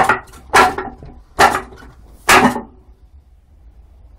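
Wooden dummy (muk yan jong) being struck by forearms and hands on its wooden arms: four solid wooden knocks, roughly one every 0.8 s, with a few lighter taps between them, all within the first two and a half seconds.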